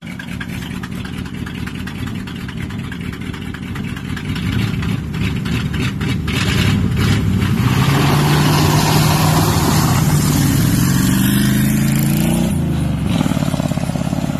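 Engines of a Ford F-250 Highboy pickup and a blue muscle car in a side-by-side drag race. They run steadily at first, then launch about halfway in, getting louder with the pitch climbing for several seconds before it drops sharply near the end.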